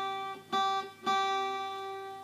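Acoustic guitar, capoed at the first fret, playing the same single note on the high E string, second fret above the capo: a note plucked just before is still ringing, then it is plucked again about half a second in and once more about a second in, each time fading away.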